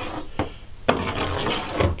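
Handling noises: a sharp click about a second in, then rubbing and a low knock as a metal stove gas manifold is moved about against wood.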